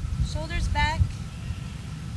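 Uneven low rumble of wind buffeting the microphone outdoors, with a brief high-pitched voiced sound under a second in.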